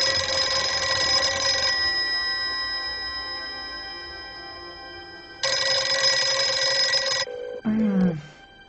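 An electric bell rings in two long bursts about four seconds apart, its metallic ring fading away between them.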